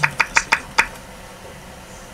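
Five quick, sharp clicks within about a second, from volume keys being pressed on a Mac keyboard, followed by near-quiet.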